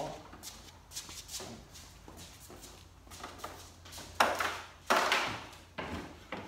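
Shuffling and handling noise as a race car's detached front-end body panel is carried off, with two loud scrapes near the end, the second lasting about half a second.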